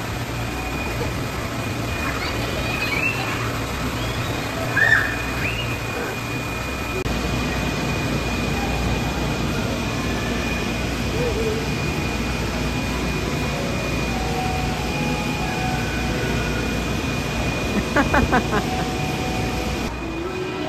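Steady background hum with a faint constant high whine, broken by a few brief children's calls in the first several seconds and a quick run of pulses near the end.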